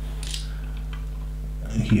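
Small plastic LEGO pieces clicking and clattering briefly as hands handle them, over a steady low hum.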